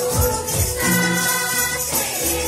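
A group of young women singing a hymn together into a microphone, with a long held note near the middle, over drum beats and the steady shaking of plastic hand rattles.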